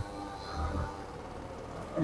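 Faint, steady background music in a pause between speakers, with a brief low rumble about half a second in.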